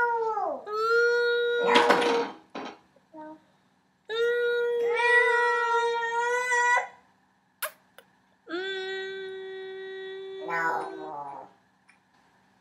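A woman's voice holding three long 'oooo' notes through pursed lips, each a couple of seconds long with short breaks between. The last note is lower and breaks into a shaky warble near the end, and there is a short breathy burst about two seconds in.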